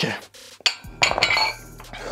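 Metal dumbbells set down at the end of a set of curls, with a sharp clink about half a second in. A louder, breathy rush of noise follows about a second in.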